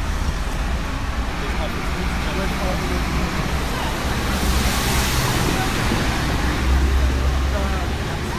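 Steady street traffic noise with a low rumble, swelling as a vehicle passes around the middle, with faint voices underneath.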